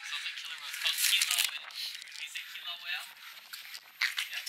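A young child making high-pitched squealing vocal sounds that rise and fall in pitch, imitating a killer whale.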